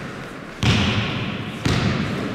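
A basketball bounced on a hardwood sports-hall floor, two loud bounces about a second apart, each echoing in the large hall.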